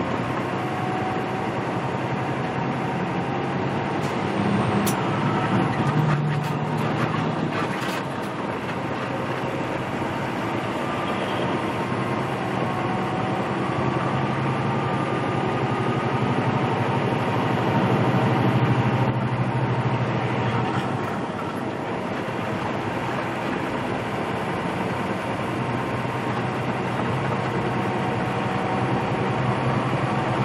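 Semi truck's diesel engine running, with road noise, heard from inside the cab while driving. The engine note rises and falls gently, with a few faint clicks between about four and eight seconds in.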